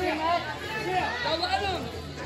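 Indistinct chatter of voices talking, with no clear words.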